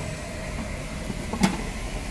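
Metal tongs set down on a stainless-steel food-stall counter: one sharp knock about a second and a half in, over steady background noise.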